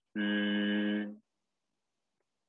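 A person's voice holding one steady chanted note at a fixed pitch for about a second, then stopping.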